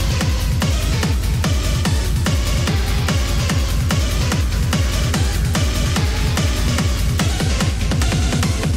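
Industrial techno from a DJ mix: a heavy kick drum beating steadily about twice a second under dense, noisy percussion and textures.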